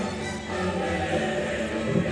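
Background music with a choir singing long held notes.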